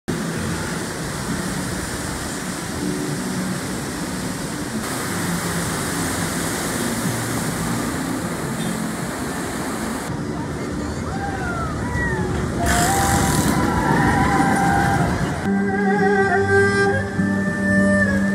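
Steady outdoor background noise, broken by a few short high rising-and-falling calls around the middle, then instrumental music with guitar and violin comes in about three-quarters of the way through.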